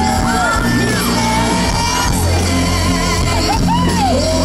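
A woman singing a country-pop song live into a handheld microphone, backed by a full band with steady bass and drums, as heard from the audience at a large concert.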